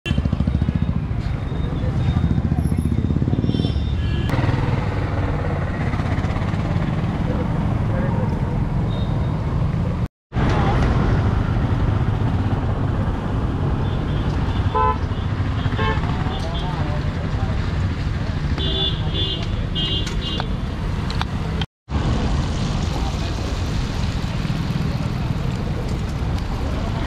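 Busy street noise: traffic running, short horn toots and people's voices, cut off twice by a brief moment of silence.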